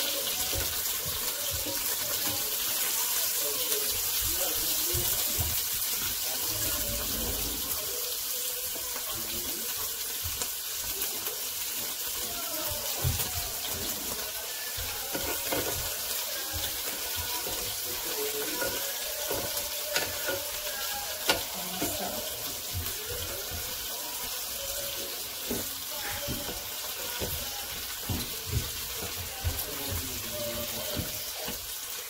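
Chicken breast pieces sizzling steadily on a hot electric grill pan, a wet hiss as the meat gives off a lot of water. A few short clicks of the tongs against the pan as the pieces are turned.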